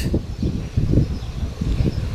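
Wind rumbling on the camera microphone, rising and falling unevenly.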